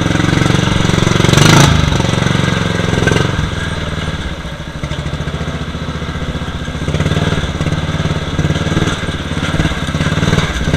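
Murray riding lawn mower's engine running under load as it drives down a muddy trail, with a brief loud burst about a second and a half in. The engine eases off at about three seconds and picks up again around seven seconds.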